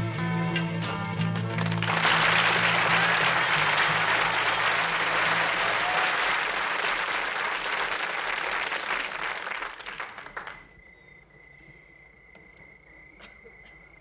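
The last notes of a song's music, then audience applause for about eight seconds that fades out. After it, a faint steady high tone.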